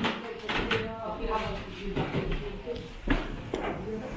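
People talking indistinctly, with a few sharp knocks, the loudest about three seconds in.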